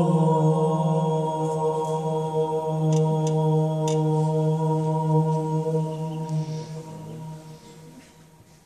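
A sustained, chant-like low drone held on one pitch with a rich stack of overtones, fading away over the last two seconds. A few faint clicks sound about three to four seconds in.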